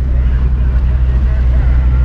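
Steady low rumble inside a moving car's cabin: engine and road noise as the taxi drives along.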